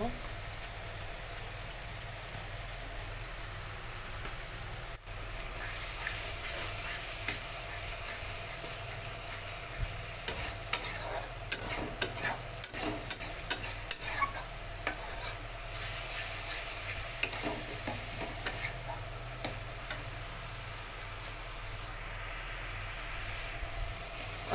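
Spice masala paste sizzling in a steel kadai while a steel spatula stirs and scrapes through it, with frequent sharp clicks of metal on the pan that come thickest around the middle.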